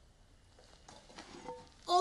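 Near silence with a few faint small sounds about a second in, then just before the end a loud held note of steady pitch starts suddenly.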